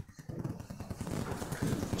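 Dense, rapid crackling and clicking of handling noise at the pulpit, made by hands working a small object over an open Bible.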